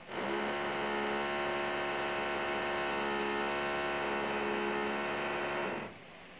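A loud, steady electrical hum, a buzz with many evenly spaced overtones, that starts suddenly and cuts off just before the end.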